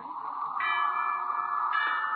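Bells struck twice, about half a second in and again near the end, each strike ringing on over soft sustained music: a radio-drama effect for a town's bells.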